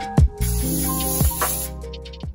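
Cooking-oil spray can hissing onto a nonstick griddle pan in one steady burst of about a second, starting about half a second in, over background music.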